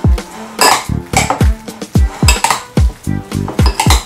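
Metal spoon clinking and scraping against a white ceramic bowl while diced plantain is stirred with a wet spice paste. Background music with a deep bass beat, about three hits a second, runs underneath.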